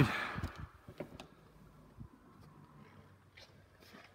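Quiet indoor room tone with a few faint, short knocks and clicks scattered through it.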